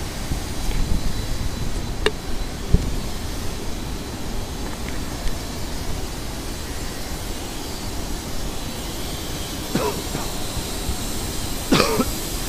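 Wind rumbling and buffeting on the action camera's microphone, a steady noise heaviest in the low end. A few sharp knocks come about two to three seconds in.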